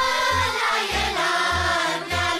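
Children's folk choir singing a Romanian folk song together over instrumental accompaniment, with a low bass note pulsing at a steady beat.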